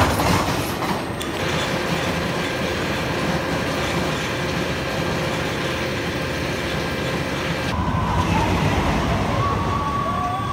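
Tennessee Tornado, a steel looping roller coaster, with its train running along the tubular track in a continuous rumble. A steady hum runs from about a second in to nearly eight seconds, and a few wavering higher tones come near the end.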